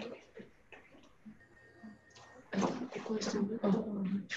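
Indistinct voices talking over a video call. They begin about two and a half seconds in, after a quiet stretch with faint clicks.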